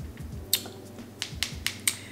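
A series of short, sharp clicks, about six, one about half a second in and the rest close together in the second half.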